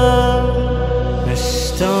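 Noha (Shia devotional lament) music between sung lines: a long, steady held chord over a low drone, with a brief breathy hiss near the end before the lead voice starts a new phrase.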